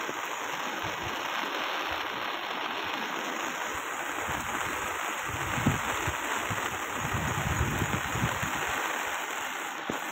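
Steady rushing of a fast-flowing, flooded river, with low rumbling gusts in the second half.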